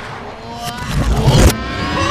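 Film sound effects played backwards: a low rumble swells louder and cuts off suddenly about one and a half seconds in, the way a reversed impact or whoosh goes.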